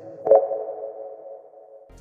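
Closing note of an electronic intro jingle: a synth hit about a third of a second in, then a held tone that fades away.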